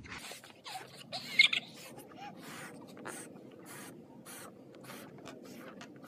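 Two people blowing up latex balloons: a string of quick puffs of breath, about two to three a second, as air is blown in and drawn back between blows. A brief louder squeak comes about a second and a half in.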